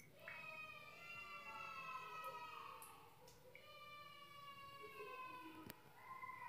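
Two long, faint wailing tones, each lasting a few seconds and drifting slowly down in pitch.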